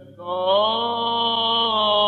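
Male cantor's voice chanting Byzantine hymnody in the plagal second mode. After a short break, one long note enters about a quarter second in, rises a little and is held.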